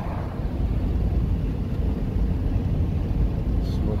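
Wind and road noise rushing in through a vehicle's open side window at highway speed: a steady low rumble that gets louder just after the start.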